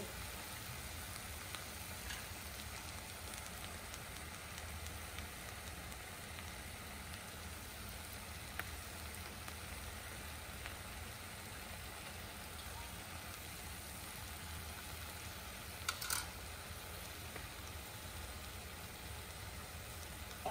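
Tuna and potato curry sizzling steadily in an enamelled cast-iron pot on the stove. A single brief sharp click sounds about three-quarters of the way through.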